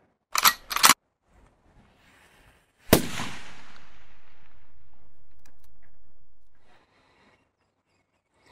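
A long cast with a spinning rod: two short clicks at the reel, then about three seconds in a sharp swish of the rod, followed by a steady hiss of braided line running off the spinning reel's spool for about three and a half seconds that dies away as the lure flies out.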